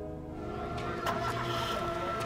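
Soft, sustained film-score chord. About half a second in, outdoor street noise with faint clicks rises beneath it.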